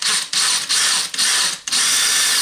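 DeWalt cordless drill with a 5 mm glass drill bit grinding against the side of a glass bottle in short stop-start bursts. The bit is starting a small indent so that it won't slip once the bottle is under water.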